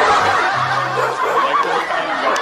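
Laughter over background music with short repeated low notes.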